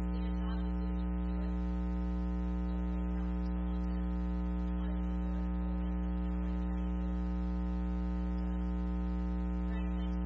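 Loud, steady electrical mains hum, a constant buzz with a stack of overtones that never changes in pitch or level, drowning out everything else.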